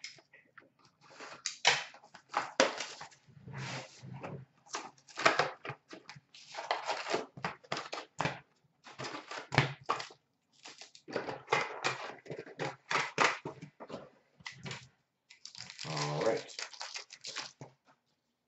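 Cardboard box of hockey card packs being opened by hand, its packs lifted out and handled: an irregular run of short rustles, crinkles and clicks of card stock and pack wrappers.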